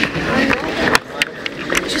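Indistinct voices of people talking, broken by several sharp clicks and knocks, the loudest about a second in.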